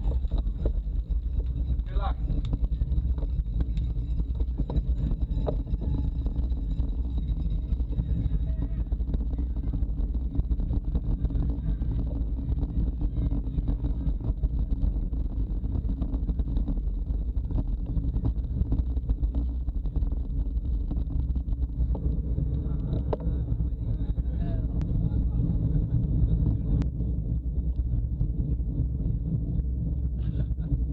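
Wind rumbling on the microphone of a bike-mounted camera as a road bike rolls along, with faint voices underneath.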